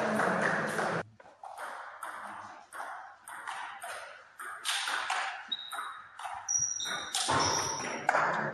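Table tennis rally: a celluloid ball struck back and forth with paddles and bouncing on the table, a sharp click about every half second.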